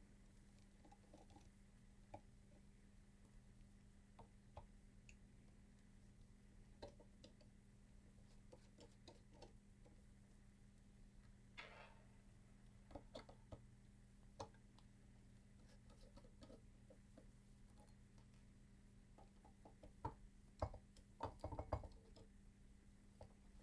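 Faint, sparse clicks and ticks of a precision screwdriver and small screws being worked out of a CD changer drive's metal bracket, over a low steady hum. There is a brief scrape about halfway through and a cluster of louder clicks near the end.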